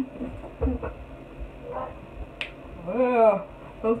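A person's voice making short wordless sounds, then a drawn-out exclamation about three seconds in that rises and then falls in pitch. A single sharp click comes a little before it.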